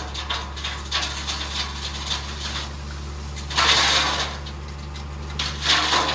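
Tipper truck's diesel engine running steadily while the hydraulic hoist raises the dump bed, with the red soil load sliding and pouring out of the tailgate in rushes, loudest about three and a half seconds in and again near the end.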